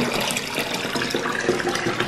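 Bathwater sloshing and splashing as a hand swishes through a filled tub, stirring it to dissolve a solid bath oil.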